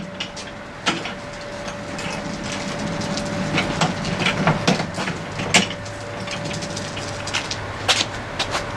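Steel parts and tools being handled and set down on concrete: scattered clinks and knocks, a handful over several seconds, over a steady faint hum.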